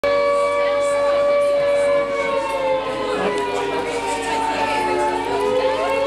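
Air-raid siren wailing, a sustained tone whose pitch sags in the middle and climbs back near the end, with people talking underneath.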